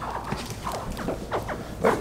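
Hatchling American alligators chirping in a tub of sphagnum moss: a run of short, quick downward-sliding calls, several to the second, over the rustle of hands digging through the moss.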